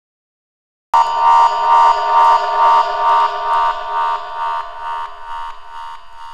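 Electronic synth tone, buzzer-like, pulsing about twice a second and slowly fading out, after a second of silence at the start: the intro of an electronic dance track.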